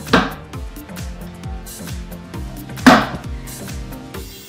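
Two sharp knocks about three seconds apart, the second the louder, from a King Song 16S electric unicycle being handled on a tile floor, over background music with a steady bass beat.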